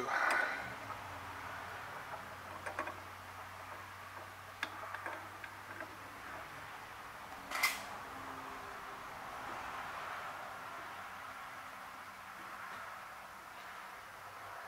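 Faint steady shop hum while threaded metal parts are turned together by hand, with a few light clicks and one sharper click about halfway through.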